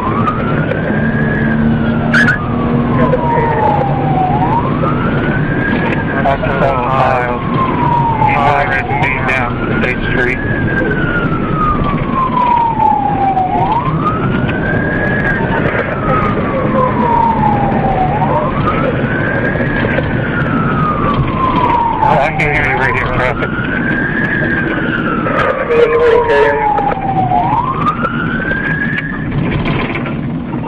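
Police cruiser siren on wail, cycling about every four and a half seconds: each cycle rises quickly and then falls slowly. It is heard from inside the pursuing car over steady engine and road noise.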